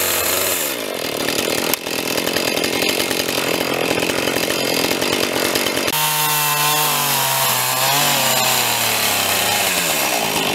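Husqvarna chainsaw running at high throttle while ripping a log lengthwise, the chain cutting steadily through the wood. The engine pitch wavers and sags as it loads in the cut, with an abrupt change in the sound about six seconds in.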